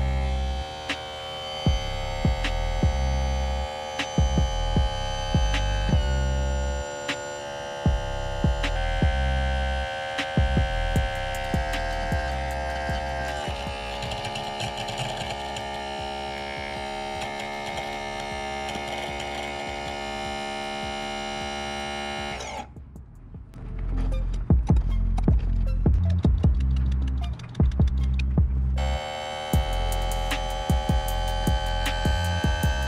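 Electric power trim and tilt pump on an 85 hp Johnson/Evinrude outboard running as the motor is raised and lowered, a steady hum that shifts pitch a few times, with scattered clicks. It stops about two-thirds of the way through and starts again near the end. The caption says this is what air in the system sounds like: the hydraulic system has not yet been fully bled. Background music with a steady beat plays underneath.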